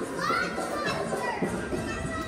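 Children's voices calling and shouting as they play, with music playing in the background.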